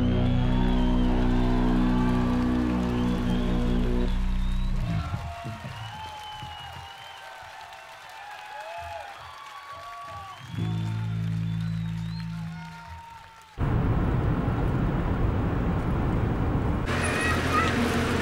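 A live rock band's final low chord sustaining and ringing out, then a concert crowd cheering and whooping while the music drops away. A low droning chord swells back briefly, and about thirteen seconds in the sound cuts abruptly to a loud, steady rush of noise.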